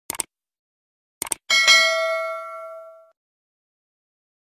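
Subscribe-button sound effects: a pair of quick clicks, another pair about a second later, then a bell ding that rings out and fades over about a second and a half.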